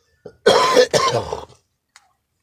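A man coughing twice in quick succession.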